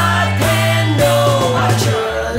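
Early-1970s rock song: a full band with a held bass note under a long high melodic line that slides down in pitch in the second half.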